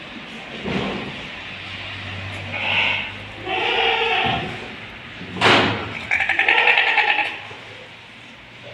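Sheep bleating: a short bleat, then two longer bleats, the last one quavering. A sharp knock between them is the loudest sound.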